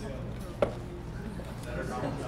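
A single sharp tap or knock, a little over half a second in, over a low murmur of voices and room hum.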